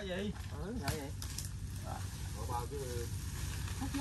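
Dry palm fronds crackling and rustling as they are pulled and shifted out of a brush pile, with faint voices talking in the background.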